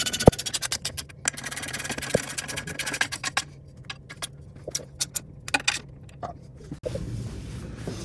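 Ratchet wrench clicking rapidly as a nut is run onto a bolt of a custom rear gearbox mount bracket, then slower, scattered clicks.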